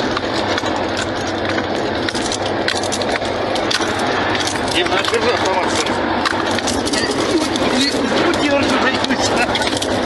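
Military vehicle driven fast over a rough dirt road, heard from inside the cab: a steady engine hum under loud road and wind noise, with constant rattling and clatter of the cab and loose fittings.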